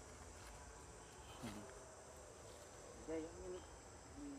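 Faint, steady chirring of crickets and other insects, a high even drone, with a brief voice sound about one and a half seconds in and another near the end.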